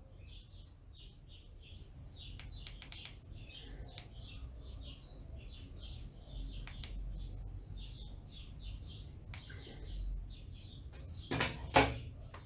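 Small birds chirping in the background, a quick, continual run of short high chirps, with a few faint clicks. Near the end comes a louder short clatter as the soldering iron is set down in its stand.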